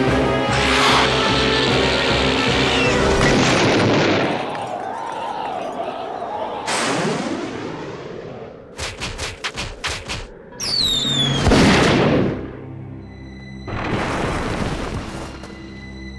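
Cartoon soundtrack: music for the first few seconds, then comic sound effects. There are whooshing sweeps, a quick rattle of clicks, a falling whistle and a loud boom of a crash just before the twelfth second, followed by a thin ringing tone and another whoosh.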